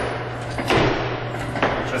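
Sneakered feet landing in the step-up exercise, two thuds about a second apart on the bench and hardwood floor, over a steady low hum.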